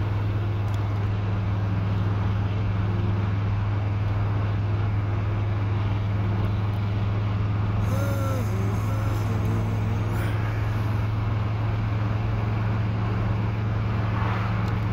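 Steady low drone inside a vehicle's cabin. About eight seconds in, a man yawns audibly.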